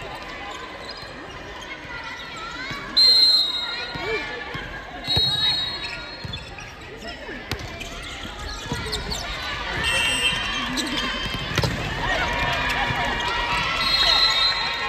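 Volleyball rally in a gymnasium: the ball is struck several times, the loudest a sharp hit about three seconds in, with short high-pitched squeaks and players calling out across the hall.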